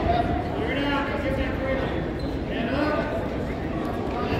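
Indistinct voices of spectators and coaches echoing in a gymnasium: overlapping chatter and calls, none of them clear words.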